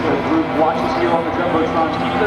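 Indistinct talking, a man's voice among others, over a steady low hum.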